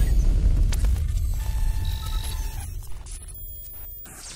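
Intro sound effect for a channel logo: a deep bass boom that fades away over about three seconds, with brief electronic tones at several pitches sounding over it.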